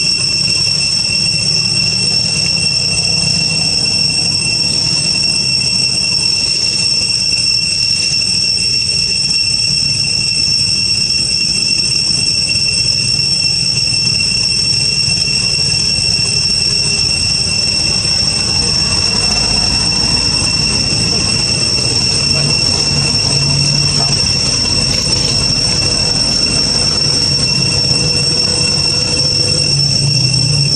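A steady high-pitched insect drone, as from a chorus of cicadas, held on one unbroken pitch throughout.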